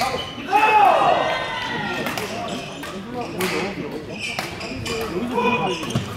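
Badminton doubles rally on a wooden hall floor: sharp racket strikes on the shuttlecock and shoes squeaking on the court, with voices echoing around the hall.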